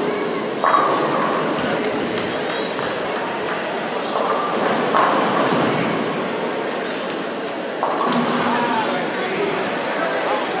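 Bowling alley din: pins crashing on the lanes, with sudden loud crashes about a second in, around five seconds and near eight seconds, over a constant hubbub of voices echoing in a large hall.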